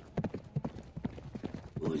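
A person imitating a galloping horse with a quick, even run of clip-clop clicks, about six or seven a second.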